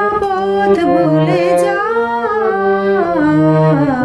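Harmonium playing a slow melody in long held notes, with a voice singing the tune along with it and sliding between the notes.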